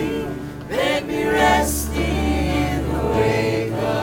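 Unplugged folk band performing: several voices singing together in a slow, sustained melody, joined about a second and a half in by a steady low upright bass note.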